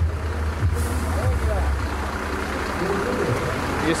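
A large vehicle's engine running with a deep, steady hum that fades out after about a second and a half, over a general crowd murmur with faint voices.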